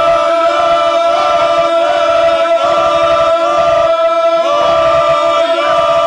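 A group of men singing loudly without accompaniment, holding long notes joined by short sliding turns, with brief breaks between phrases.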